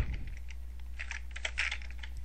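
Computer keyboard being typed on: a quick run of separate key clicks over a steady low hum.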